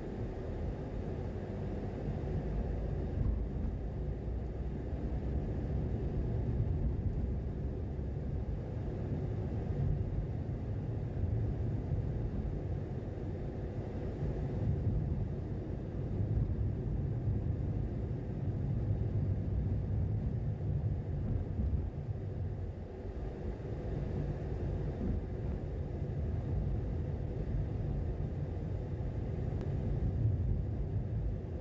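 Steady low rumble of a car driving along a city street: road and engine noise from the moving car.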